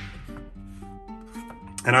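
Background music: a slow melody of held notes stepping up and down, with a few faint knife cuts through raw potato on a plastic cutting board.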